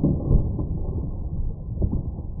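Shredder cutters crunching and tearing full aluminium drink cans, with soda spraying out. It is a dull, muffled rumble with irregular knocks and crackles.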